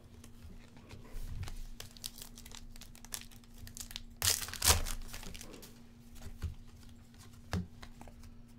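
Foil wrapper of a Panini Select soccer card pack crinkling as it is handled and torn open, the loudest rip about four seconds in, with light clicks of cards being handled around it.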